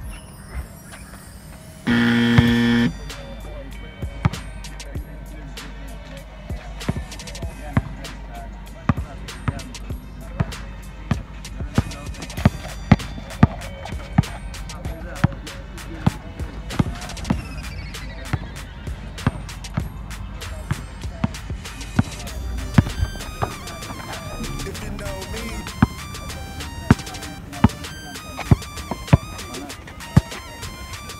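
A basketball dribbled on a concrete court, its bounces striking again and again at an uneven pace over background music. About two seconds in comes a loud buzzing tone lasting about a second.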